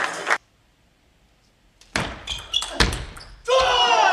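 Table tennis ball struck and bouncing on the table in a short exchange, a series of sharp clicks starting about halfway through, followed near the end by a loud shout with falling pitch. The sound cuts off abruptly to near silence just after the start.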